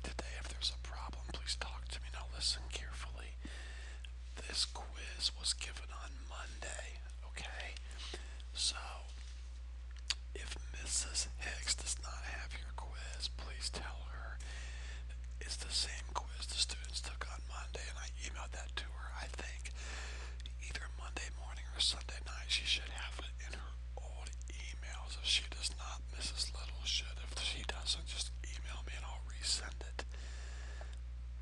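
Quiet whispering in short, scattered snatches over a steady low electrical hum.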